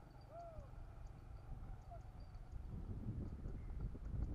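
A bird gives a few short hooting notes, the clearest about half a second in, over a low rumble that grows louder in the second half.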